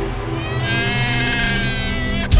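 Film-score background music, with a high sustained tone entering about half a second in and gliding slowly downward.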